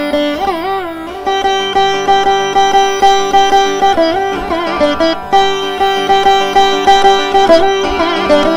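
Carnatic classical music: a veena and a violin play a melodic passage of held and sliding, ornamented notes over a steady low drone, with a regular pulse of plucked or struck accents.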